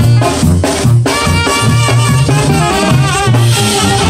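A Mexican tamborazo band playing live and loud: horns carry the melody over a steady drum beat.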